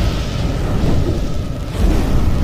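A deep, continuous rumbling sound effect of the kind used for a cinematic fire-and-smoke intro, thunder-like, with a steady hiss above it.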